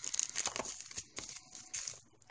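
Plastic bags crinkling and rustling as they are handled, a run of quick, irregular crackles that is busiest at the start and thins out toward the end.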